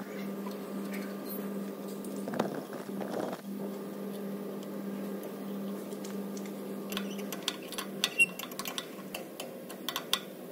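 Hand work on the exhaust: soft rustles, then from about two-thirds of the way in, a run of light metallic clicks and clinks as a spanner is fitted onto the new NOx sensor's hex, over a steady low hum.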